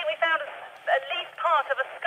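A voice speaking over a handheld two-way radio, thin and tinny, with no bass and no top. It is a field report that they think they have found something in the grave cut.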